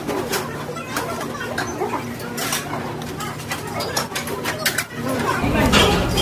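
Restaurant table sounds: short clicks of metal utensils against dishes over a background murmur of voices and a steady low hum. Louder background music comes in near the end.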